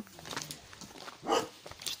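A toddler's footsteps crunching on loose gravel, with a single short dog bark about a second and a half in.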